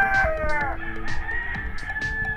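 Rooster crowing; the call ends with a falling note in the first second, and a thin steady high note holds on after it.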